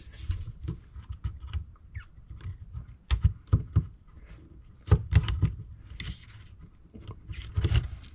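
Laser-cut plywood parts of a wooden mechanical calendar model kit clicking and knocking as they are fitted and turned by hand. The sharp clicks come in small clusters, the loudest a little past the middle.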